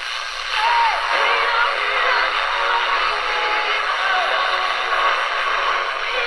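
GE 7-2001 Thinline portable radio's small speaker playing an AM broadcast over steady hiss: a voice and music come through. The station gets louder about half a second in.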